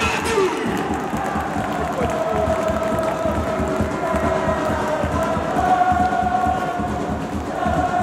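Stand of football supporters singing a chant together in long, held notes over a steady low beat.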